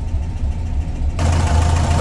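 Air-cooled VW Beetle flat-four engine on dual Weber IDF carburetors idling steadily, its idle now stable at an air/fuel ratio of about 13 to 14 after the plugged idle jets were cleared. About a second in it grows suddenly louder and brighter, heard close up at the engine instead of from the cabin.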